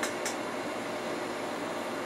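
Steady, even background hiss of room noise, with a short faint sound just at the start.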